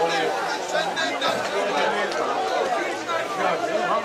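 Speech: several people talking at once, voices overlapping with no break.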